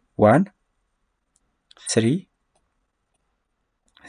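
Speech only: two short spoken words about a second and a half apart, with near silence between them broken by a few faint clicks.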